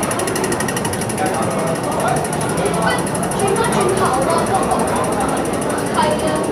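Crowd of commuters talking on a packed metro platform, with a high, rapid, even pulsing sound running steadily underneath the voices.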